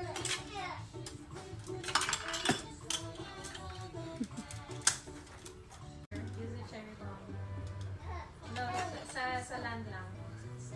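Young children's voices over background music, with a couple of sharp clicks about two and five seconds in.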